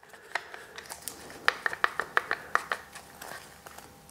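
Jorgensen E-Z Hold one-handed bar clamp being tightened by pumping its trigger onto a wooden block: a few faint clicks, then a quick run of sharp ratcheting clicks, about five a second, in the middle.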